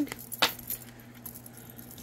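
Tarot cards being handled: one sharp snap about half a second in, then a few faint ticks.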